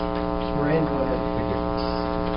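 Steady electrical hum with many evenly spaced overtones, with faint, indistinct speech under it.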